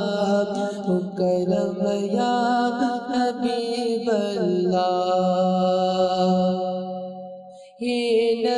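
Male voice singing an Islamic devotional song, drawing out long melismatic notes over a steady low drone. The phrase fades out near the end and a new one begins right after.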